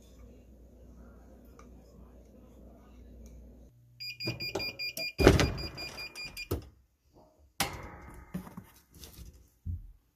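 Heat press beeping at the end of its pressing cycle while the handle is pulled and the press opens with a loud clunk, then a second sharp knock and the rustle of paper sheets as the pressed keychains are uncovered.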